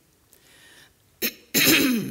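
A woman coughing: a short catch about a second in, then one loud cough near the end.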